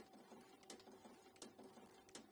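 Very faint sound of a Morgana FRN5 rotary numbering machine running, with a light click about every 0.7 seconds over a low steady hum.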